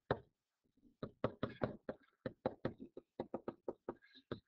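A stylus tapping and knocking on the writing surface as words are quickly handwritten: a quick series of short, sharp taps, about five or six a second, starting after a one-second pause.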